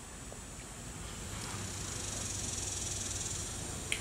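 High, fine buzz of insects outdoors, growing louder about a second in and easing off near the end, over a faint steady hiss.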